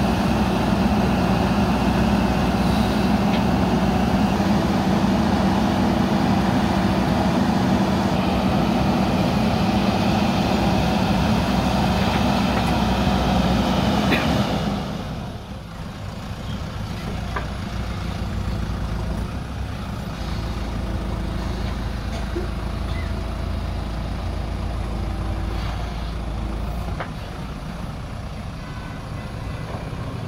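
JCB 3DX backhoe loader's diesel engine running steadily under load while it digs. It is loud for the first half, then drops to a quieter, steady running sound about halfway through.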